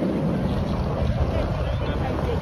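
Wind buffeting the phone's microphone while walking, a heavy, uneven low rumble, with faint voices of passers-by underneath.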